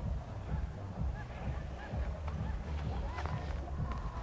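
Wind rumbling on a phone's microphone, with a few faint short high calls over it.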